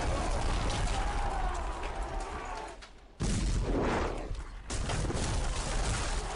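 Film battle sound effects of a fortress gate being blasted in: a continuous din of blasts and crashing, then a sudden loud impact just after three seconds and another just before five.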